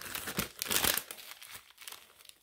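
Small plastic zip-lock bags of diamond-painting drills crinkling as they are handled and shuffled in the hands, in irregular bursts that are busiest in the first second and thin out toward the end.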